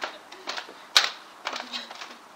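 Sharp hand claps: a loud one about a second in, with softer, quicker claps around it.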